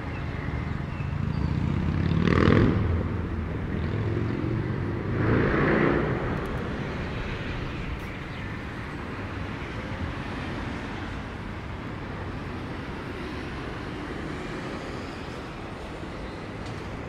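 Road traffic noise, with two vehicles passing close by about two and a half and five and a half seconds in, then a steady hum of traffic.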